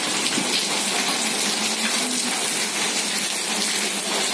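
Heavy rain falling steadily, an even hiss of water.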